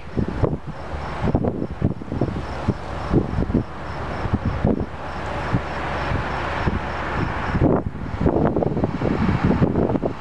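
Wind buffeting the microphone in uneven gusts, over a steady low hum.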